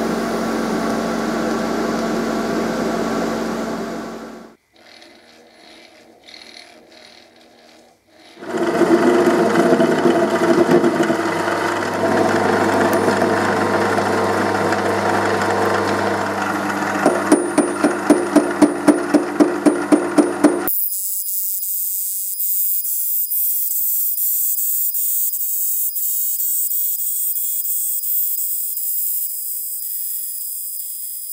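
TIG welding arc buzzing steadily for about four seconds. After a short quieter pause, a metal lathe cutting metal, with a run of sharp regular ticks, about four a second, for a few seconds in the middle. In the last third the lathe facing a metal disc, heard as a thin, high-pitched cutting sound.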